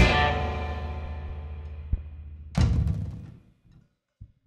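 Rock band's last chord ringing out and fading as the song ends. A soft thump comes about two seconds in, then a louder final hit that dies away within about a second.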